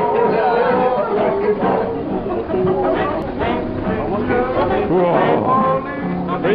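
A group of people chanting in long, held tones, with chatter underneath.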